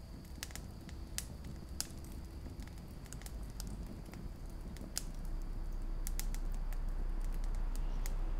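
Campfire crackling: irregular sharp pops and snaps over a low rumble. About five seconds in, the low rumble swells and becomes louder and steadier.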